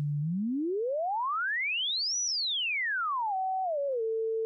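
Pure sine tone from a software tone generator whose pitch follows a simulated engine-RPM input: it holds low briefly, glides smoothly up to a high pitch about two seconds in, then glides back down, pausing twice on the way and stepping lower near the end. Heavy temporal smoothing rounds off the slider's moves into even glides.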